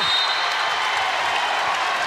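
Basketball arena crowd cheering and clapping, a steady even din.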